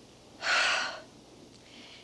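A person's sharp gasp: one quick, breathy intake of air about half a second long, near the start.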